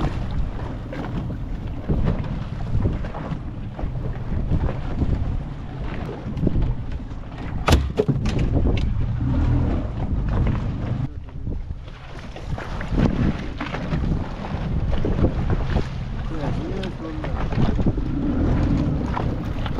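Wind buffeting the microphone aboard a small open fishing boat at sea, over the rush of the choppy water, with scattered knocks on the boat; one sharp knock just before eight seconds in is the loudest.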